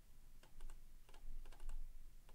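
Computer mouse and keyboard clicks as text is copied and pasted: a string of light clicks, several in quick pairs, from about half a second in.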